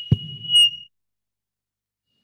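Public-address microphone feedback squeal: one high, steady tone that rings loudly and then cuts off suddenly a little under a second in, with a short low thump just after it begins.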